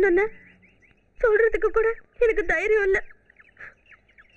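A woman's voice crying out in two high-pitched, wavering phrases of about a second each, emotional dialogue that carries no clear words. Background music fades out in the opening moment.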